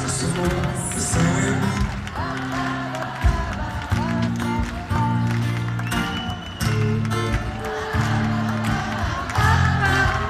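Live band playing an instrumental passage through a concert PA, with electric guitar over sustained chords that change about once a second.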